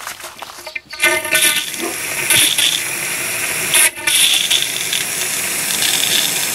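Water from a garden hose rushing through the fill inlet into a Winnebago Micro Minnie travel trailer's fresh-water tank. It starts suddenly about a second in and then runs as a steady rush, broken off briefly just before four seconds.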